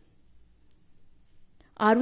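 Near silence: faint room tone with one brief high tick about two-thirds of a second in, then a woman's voice begins speaking near the end.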